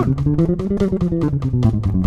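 Electric bass played fingerstyle: fast chromatic eighth notes at 290 bpm, about ten even notes a second. Short four-note runs climb a fret at a time and step back down high on the neck.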